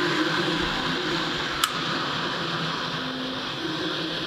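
Benchtop soldering fume extractor's fan running steadily, an even rush of air with a faint low hum. A single light click about one and a half seconds in.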